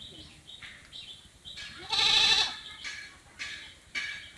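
An animal bleating once, a loud quavering bleat of about half a second about two seconds in, over short high chirps that repeat about twice a second.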